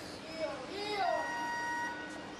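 A voice calls out with its pitch rising and falling, then a steady high beep is held for about a second.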